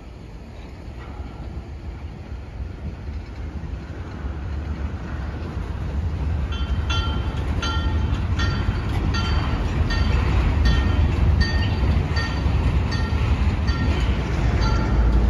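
Train of tank cars rolling slowly by while a low diesel locomotive rumble grows steadily louder as the Alco RS27 draws near. From about halfway in, a bell dings over and over.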